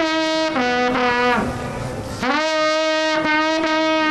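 Trembita, the long wooden Carpathian alpine horn, blown in long held calls: a note that steps down to a lower one, a short breath about a second and a half in, then a long steady note from about two seconds in.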